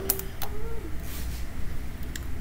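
Two sharp clicks of a plastic water bottle being set down on a wooden floor and handled, followed by a short, faint closed-mouth 'mm' from someone tasting a drink.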